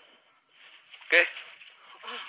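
A man's voice saying "oke" once, about a second in, over a faint steady hiss.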